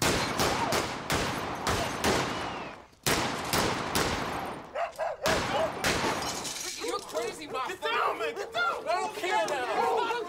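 Rapid sharp bangs and crashes mixed with shouting voices for most of the first six seconds, then men talking.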